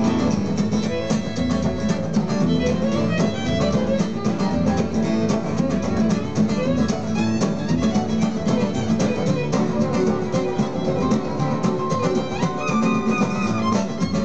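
Live acoustic band playing an instrumental break, a fiddle carrying the lead melody over acoustic guitars in a bluegrass-country style, heard through the stage PA from among an open-air crowd.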